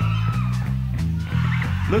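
Live rock band vamping on a bass-and-guitar groove between spoken lines, with a voice coming back in right at the end.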